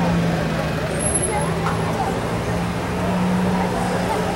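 A motor vehicle's engine running with a steady low hum that rises slightly in pitch about halfway through, over a background of voices.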